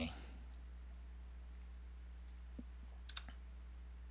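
A few faint, scattered clicks of computer keys being pressed, over a low steady hum.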